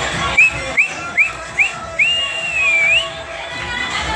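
Whistling: four short rising whistles about 0.4 s apart, then one long whistle that dips and rises again, over dance music.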